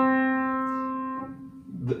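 A single note of an upright piano, played on one white key, ringing and dying away steadily. Its higher overtones cut off about a second in and the rest of the note fades out shortly after.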